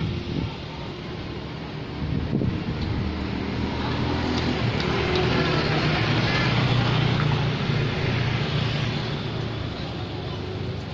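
Street traffic: a vehicle engine humming, growing louder over several seconds and easing off again as it passes along the road.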